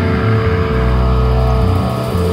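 Rock band instrumental passage: deep held bass notes under a sustained guitar tone, with no drum hits.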